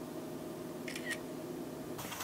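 Smartphone camera shutter sound: a quick double click about a second in, over a faint steady hum.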